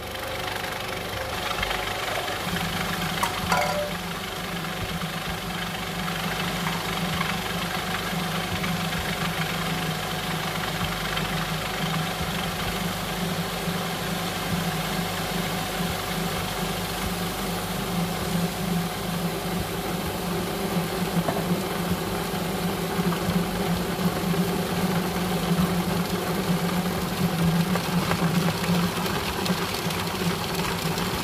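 Electric food processor running steadily, its blade grinding a dry ground-nut mixture in the bowl.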